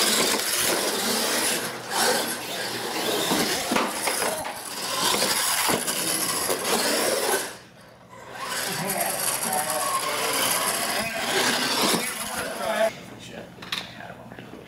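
Radio-controlled monster trucks racing down a drag track, a dense mechanical whir of motors, gears and tyres. It drops away briefly about eight seconds in, picks up again, and falls off near the end.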